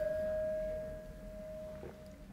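A wine glass ringing on after being clinked: one clear steady tone with a fainter higher overtone, slowly fading and dying out near the end.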